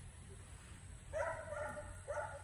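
An animal calling in the background: one drawn-out, even-pitched call about a second in, and a second call starting near the end.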